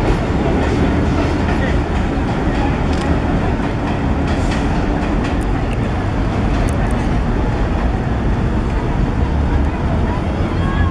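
Subway trains on an elevated line: a steady, loud rumble of steel wheels on rail with scattered clicks, as a modern train pulls away and a 1920s vintage train draws in.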